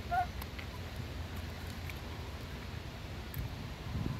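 Low, steady wind rumble on a phone microphone outdoors, with a faint short chirp just at the start and a few faint ticks.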